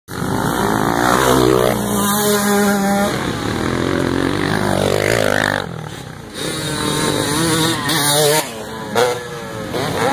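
Several motocross dirt bike engines revving hard on a race track, their pitch climbing and falling as the riders work the throttle. The sound dips briefly about six seconds in, then picks up again.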